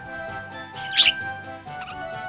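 Background music playing, with one short, sharp chirp from a budgerigar about halfway through.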